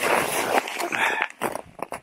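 Boots crunching and scuffing in packed snow: one long rustling crunch at the start, a shorter one about a second in, then a few faint scuffs.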